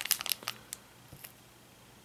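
Small plastic Haribo Gold-Bears candy bag crinkling in the hands as it is turned over, mostly in the first half second, then a few faint crackles before it goes almost quiet.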